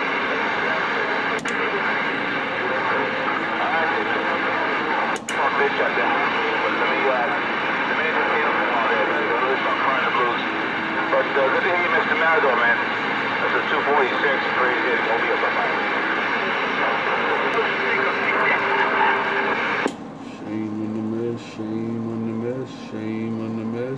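A Galaxy CB radio's speaker carrying a loud, garbled transmission: unintelligible voice buried in hiss and steady whining tones, which cuts off sharply near the end when the other station unkeys.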